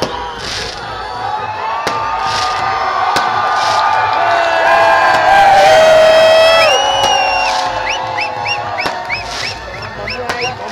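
Crowd of fans cheering and shouting in celebration, many voices and long held cries swelling to a peak in the middle. Near the end there is a quick run of short, high, rising notes.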